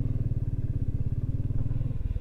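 Motorcycle engine running steadily with an even, rapid pulsing beat, heard close up from the rider's seat.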